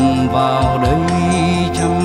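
Music with no words: held melodic notes that glide from one pitch to the next over a steady low bass line.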